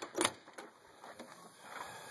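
Two short light knocks in the first half second, then faint background noise.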